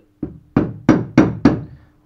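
A mallet knocking a propeller-shaft bearing housing (bearing, oil seal and bushing) into an outboard motor's lower-unit gearcase. There is one light tap, then four firm blows about a third of a second apart.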